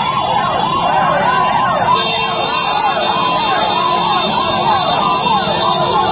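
A vehicle siren wailing in quick, repeated rising-and-falling sweeps over the noise of a crowd, with a steady tone joining about two seconds in.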